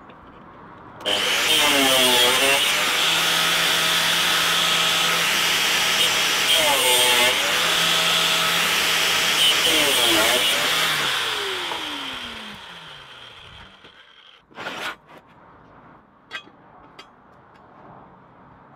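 DeWalt angle grinder with a cut-off disc, mounted in a cutting stand, switched on about a second in and cutting through a thin steel tube, its pitch dipping several times as the disc bites into the metal. It is switched off around eleven seconds in and spins down with a falling whine, followed near fifteen seconds by a short knock and a few light taps.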